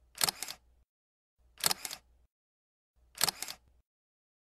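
Three short clicking sound effects, about a second and a half apart, each a quick cluster of clicks, for a cursor pressing the like, subscribe and notification-bell buttons of an animated subscribe overlay.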